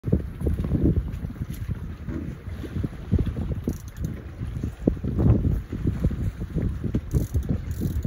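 Wind buffeting the microphone in irregular low gusts and rumbles, over open sea.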